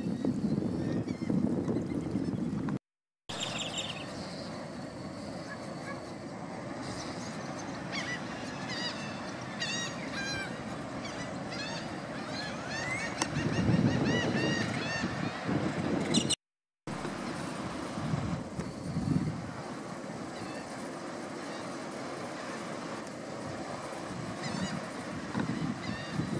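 Wind on the microphone over outdoor ambience, with a flurry of many short, chirping bird calls in the middle stretch. The sound cuts out briefly twice.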